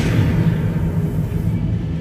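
Deep, steady rumbling sound effect over the stage show's sound system, with a hiss that fades out in the first half second.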